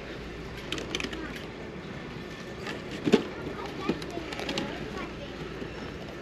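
Faint store background chatter, with a few light clicks and rattles of a plastic blister-pack toy on a metal display hook as it is handled. The sharpest click comes about three seconds in.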